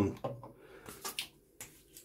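A few faint, short splashes and pats of hands applying alcohol aftershave lotion to a freshly shaved face.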